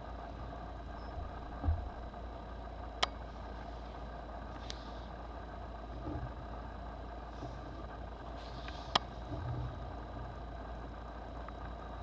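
A steady low mechanical hum runs throughout, like a motor or appliance running in the room. Over it come two sharp clicks, about three seconds in and again about nine seconds in, and a few soft rustles and bumps as an old paper booklet is handled.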